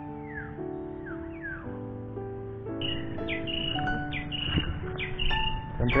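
Calm background music of slow, held keyboard notes, with birds chirping over it: a few falling chirps early and then repeated high chirps about twice a second from about halfway.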